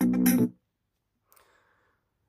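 Instrumental music with a strong bass line played at full volume through a Leicke DJ Roxxx Ninja portable Bluetooth speaker, cutting off suddenly about half a second in. After it, near silence with one faint, brief noise.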